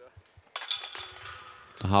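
A disc golf disc striking the hanging steel chains of a basket and dropping in: a sudden metallic jingle about half a second in that rings on for about a second. It is the sound of a made putt.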